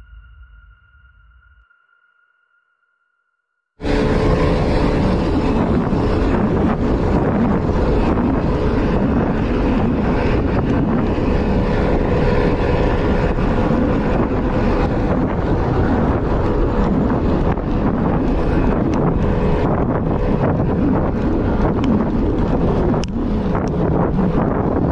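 Headwind buffeting the microphone of a handlebar-mounted camera on a bicycle, a loud, steady rush of wind noise. It starts abruptly about four seconds in, after a piece of music fades out.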